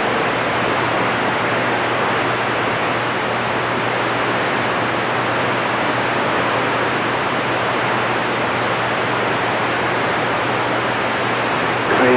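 CB radio receiver putting out a steady hiss of band static with a faint low hum, with no voice copied through it; it cuts off abruptly at the end.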